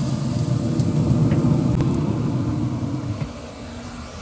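Pit Boss pellet smoker running hot, a steady low rumble from its fan and fire, which drops away a little after three seconds in.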